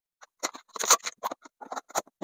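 A Pokémon booster bundle's packaging being opened by hand: a quick, irregular run of short crinkles and scrapes.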